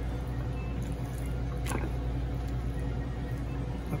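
A steady low machine hum, with faint soft squelching as a hand rubs olive oil and herbs into raw deboned chicken legs in a dish, and a light tick about halfway through.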